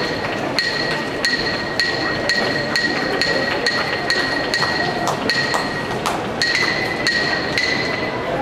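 Hyoshigi, the yobidashi's pair of wooden clappers, struck in a steady beat of one sharp clack about every 0.6 seconds, each with a short high ring. The clapping marks the wrestlers filing out of the ring at the end of the ring-entering ceremony.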